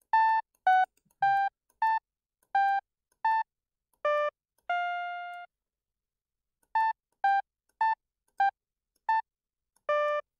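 A solo synth melody line played back in a music production program: a single line of short separate notes, one at a time. A phrase of seven short notes ends on a longer held note, then after a pause about a second long a second phrase of short notes follows. There is nothing else underneath it.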